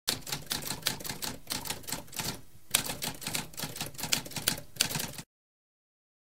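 Typewriter keys clacking in a fast, uneven run of strokes, with a brief pause about halfway through, stopping suddenly about five seconds in.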